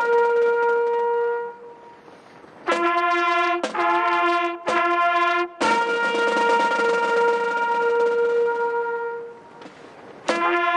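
A solo trumpet playing a slow call. A long held note fades out, then after a short gap come three shorter, lower notes and a long held higher note that fades away near the end.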